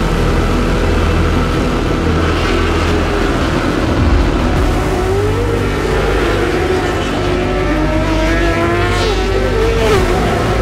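Racing superbikes running hard on track, the engine note rising and falling as they accelerate, change gear and pass by.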